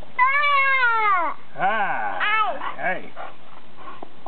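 A young boy calling out for the ball in a high, drawn-out voice: one long call falling in pitch, then three shorter rising-and-falling calls.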